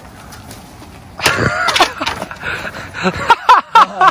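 Young men laughing: a loud drawn-out vocal outburst about a second in, then a run of short laughs near the end, over a low background hum.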